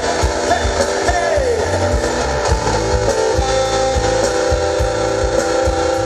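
Live band playing an instrumental passage through a concert PA: electric guitar strumming over bass and a steady drum beat, with a guitar note sliding down in pitch about a second in.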